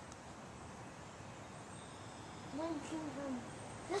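Quiet outdoor background noise, then a few faint, short voice sounds about two and a half seconds in.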